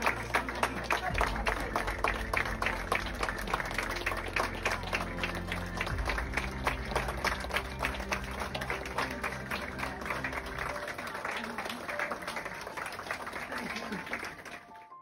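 A crowd of hospital staff applauding, with many quick overlapping claps, over background music. The clapping thins slightly toward the end.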